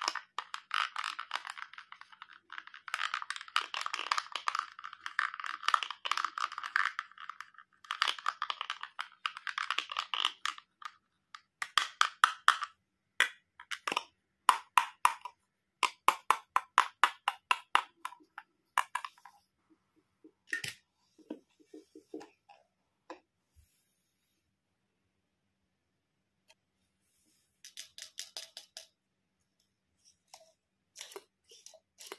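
A plastic toy toothbrush scrubbing the plastic teeth of a toy dental model. It starts as dense, continuous scratchy brushing for about ten seconds, then breaks into quick separate strokes. A few light clicks follow, then a silent pause of several seconds and a short run of scratchy strokes near the end.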